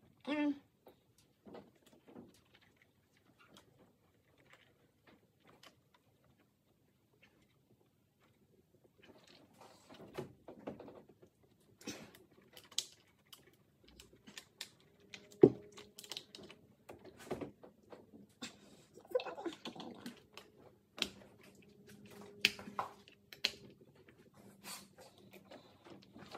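Hands working over the top of an engine: scattered clicks, knocks and small plastic rattles from fitting connectors and hoses, sparse at first and busier from about nine seconds in, with one sharper knock around the middle.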